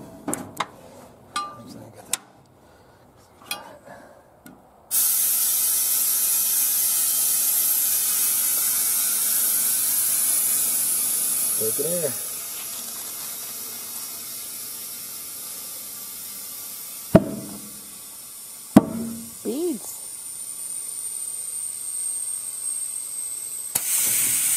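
Compressed air hissing from an air-tank hose into a soaped tubeless tire on a steel wheel, inflating it to seat the beads. The hiss starts suddenly about five seconds in and drops quieter about halfway through. Two sharp pops about a second and a half apart follow, typical of the tire beads snapping onto the rim.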